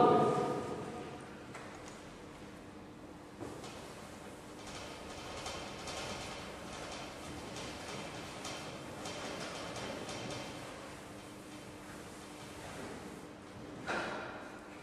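Faint scratching and light taps of writing on a board in a quiet lecture room, over a steady low hum.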